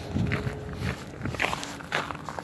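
Footsteps of a person walking, a few irregular soft thumps and scuffs, close to a handheld phone's microphone.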